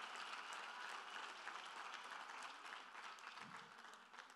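Congregation applauding, a dense patter of many hands clapping, fading away toward the end.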